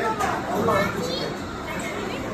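Children's voices: young kids chattering and calling out over the background hubbub of a busy indoor play area.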